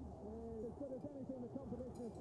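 Pigeons cooing: a steady run of soft, overlapping rising-and-falling coos.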